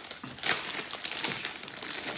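Plastic Kit Kat chocolate-bar wrappers crinkling as they are picked up and handled, an irregular crackle that is loudest about half a second in.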